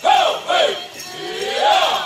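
Powwow drum group singers chanting in high-pitched voices, in phrases that fall in pitch, with a rising line near the end.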